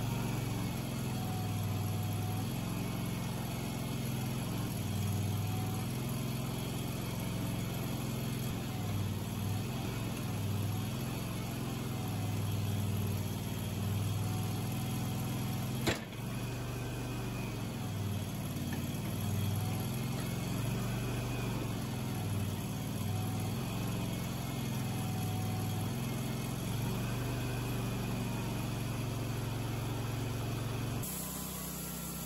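Wood-Mizer band sawmill's engine running steadily. A single sharp click comes about halfway through.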